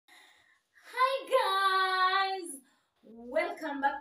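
A woman's voice calling out one long, sung note in an excited greeting: a short rise, then a held tone for about a second and a half. Ordinary speech starts near the end.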